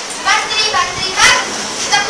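Children's voices speaking in short phrases.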